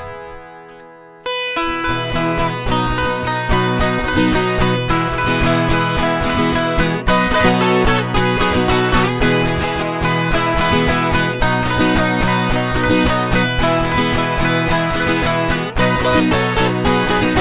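Two violas caipiras (ten-string Brazilian folk guitars) playing a lively instrumental intro in sertanejo raiz style, over a steady low bass pulse. The music starts abruptly about a second in.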